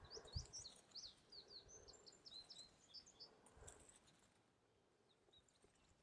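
Near silence, with faint bird chirps in the first few seconds that fade out after about three and a half seconds.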